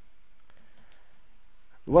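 A few faint, scattered clicks in a quiet pause, then a man's voice starts speaking near the end.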